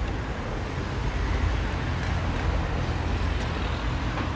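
Steady road traffic noise: a motor vehicle going by on the street, with a low engine rumble under the tyre noise.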